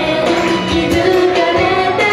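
Live performance of a Japanese idol pop song: female singing over the backing music.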